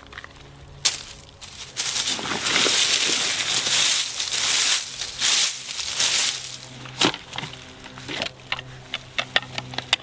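Rustling and crackling of a nylon pouch and dry leaves as a mess kit is handled and unpacked. A long stretch of rough rustling gives way to several short clicks and knocks as metal and plastic pieces are taken out.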